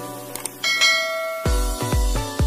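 Two quick mouse-click sound effects, then a bright notification-bell ding that rings for just under a second. About one and a half seconds in, electronic dance music with a heavy, regular bass beat starts.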